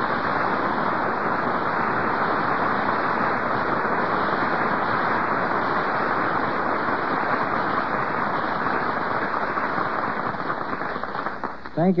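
Studio audience applauding steadily, thinning out near the end, heard through a 1930s radio broadcast recording with a narrow, muffled sound.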